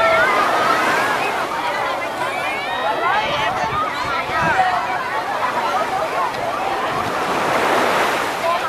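Crowd of bathers in shallow sea water, many voices chattering and calling out at once, over a steady wash of waves.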